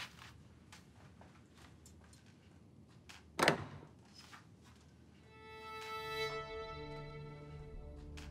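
Light footsteps on a floor, then a sharp knock from the latch of a wooden double door being opened about three and a half seconds in. Soft bowed-string music with long held notes fades in from about five seconds.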